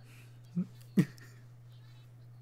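A man's short laugh: two brief chuckles about half a second apart, the second louder.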